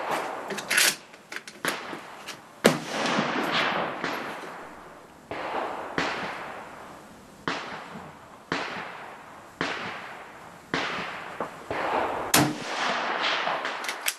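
Rifle shots on a covered firing range: about a dozen reports, roughly one a second, each trailing off in a long echo. They come too fast for one bolt-action rifle, so several shooters are firing.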